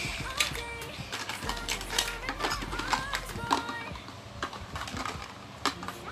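Small hard plastic toy pieces clicking and clattering as a toddler handles them and knocks them together, many sharp clicks scattered irregularly among a young child's voice.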